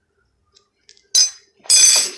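Two sudden, loud coughs, about a second in and again just before the end, from a person with a mouthful of dry ground cinnamon: the powder catching in the throat during the cinnamon challenge.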